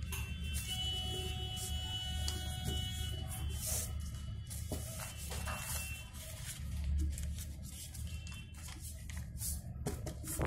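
A sheet of paper being folded and creased by hand, with scattered short rustles over a steady low hum.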